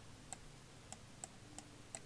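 Faint, sharp clicks of a computer mouse and keyboard, about five spread over two seconds.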